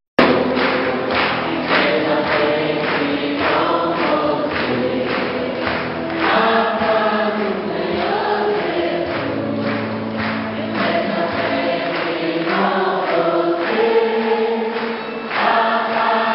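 A group of people singing a hymn together, several voices carrying a slow, shifting melody. The sound drops out for a moment at the very start.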